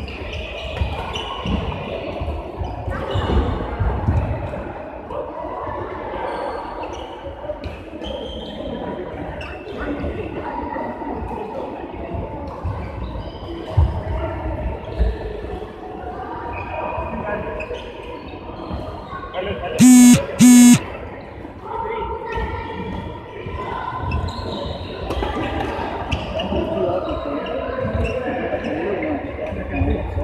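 Badminton rally in a large echoing hall: sharp racket hits on the shuttlecock and players' feet on the court, over a background of voices. About two-thirds of the way through come two loud short beeps in quick succession.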